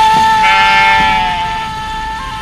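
A sheep bleats once, a pitched call of about a second starting about half a second in, over a steady held note of background music.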